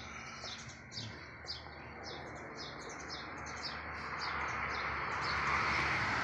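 Small birds chirping in a quick, repeated run of short, high notes, about three a second. A steady hiss grows louder in the second half.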